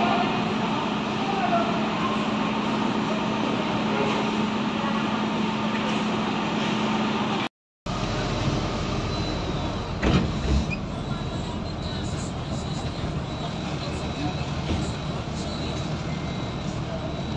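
Bus terminal ambience: a parked coach's engine idling with a steady hum under people's background chatter. A brief silent break comes about halfway; after it the hum is gone and the murmur of voices and movement is a little quieter, with a single knock a couple of seconds later.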